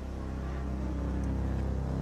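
A low, steady drone that slowly grows louder, with no speech over it.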